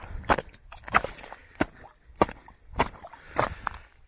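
Footsteps crunching on snow-covered lake ice at an even walking pace, about one step every 0.6 seconds.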